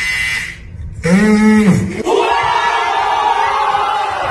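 A short buzzing tone, then one voice yelling with a pitch that rises and then falls, then several voices shouting together.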